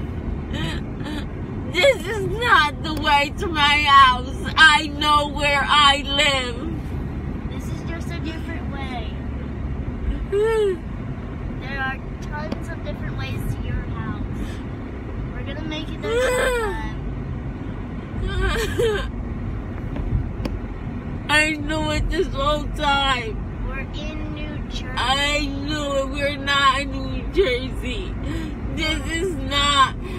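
Steady low drone of a car on the move, heard from inside the cabin, under bursts of a person's voice at about two seconds in and several times after.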